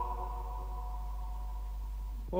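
A choir's last held chord dying away in reverberation, leaving a pause with a steady low hum.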